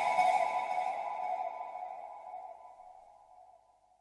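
The last held synthesizer note of an electronic dance track ringing out and fading away over about three seconds.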